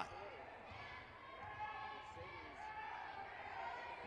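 Faint court sound of a basketball game: a basketball being dribbled on the hardwood floor, under distant players' and spectators' voices in the gym.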